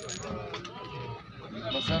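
People talking among a crowd, one voice drawn out in a long, wavering tone, with a louder spoken phrase near the end.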